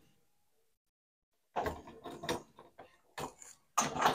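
A key and a metal lever door handle jiggled in a lock, a few faint clicks and rattles starting about one and a half seconds in.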